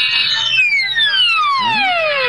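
Cartoon shrinking sound effect: a high held tone gives way to a long pitched whistle-like glide that falls steadily from high to low over about two seconds as the character shrinks.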